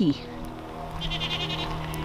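A goat bleating faintly, one short trembling call about a second in, over a steady low hum.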